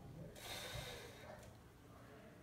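A woman's faint breath out, a breathy rush lasting under a second that starts about a third of a second in: breathing from the exertion of dumbbell squats.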